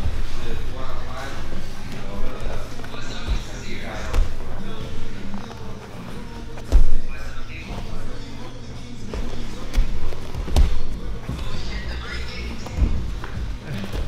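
Bodies thumping and shuffling on gym training mats during jiu-jitsu grappling: several sharp thuds, the loudest about seven seconds in. Background music and voices run underneath.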